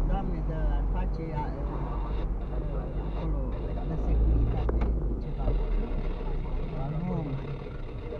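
Low rumble of road and engine noise inside a car cabin while driving slowly in town traffic, heaviest about halfway through, with indistinct voices talking over it.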